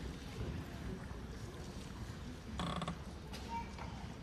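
Quiet auditorium room noise before the band begins: a steady low rumble with small rustles and creaks from the seated players, and one brief pitched sound a little past halfway.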